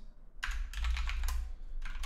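Computer keyboard typing: a quick run of keystrokes starting about half a second in, as a short word is typed into a code editor.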